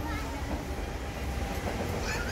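Steady low rumble of background noise with faint, indistinct voices, as heard while walking along a shopping street.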